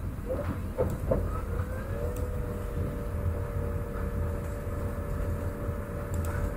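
A motor-like tone that rises in pitch for about a second and then holds steady over a low background hum, with a couple of faint clicks near the start.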